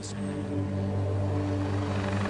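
Fire Scout unmanned helicopter's turbine engine and rotor running with a steady hum.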